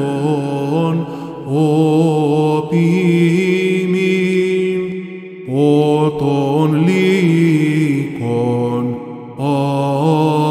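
Byzantine chant: a male cantor singing a Greek Orthodox hymn in long, ornamented phrases, with short breaks for breath about five and nine seconds in.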